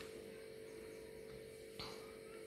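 Faint steady electrical hum, one even tone, over low background hiss, with a single brief soft noise near the end.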